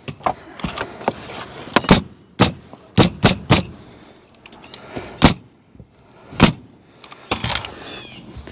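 Pneumatic coil roofing nailer firing nails through valley metal flashing into the roof deck: about eight sharp shots at uneven intervals, three in quick succession around three seconds in.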